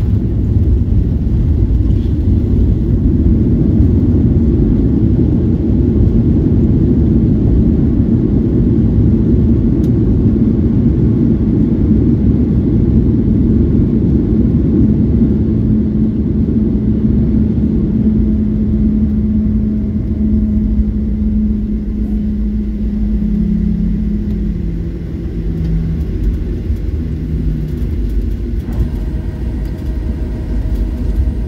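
Cabin sound of a Boeing 737 on its landing roll: a loud, steady low rumble of engines and runway. A hum in it steps down in pitch about four-fifths of the way through and then fades as the jet slows.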